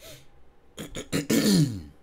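A man clearing his throat: a few short rasps, then a louder voiced rasp that falls in pitch, ending just before two seconds.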